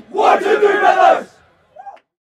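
A team of teenage boys shouting together in one loud unison cry, lasting just over a second, as they break their huddle.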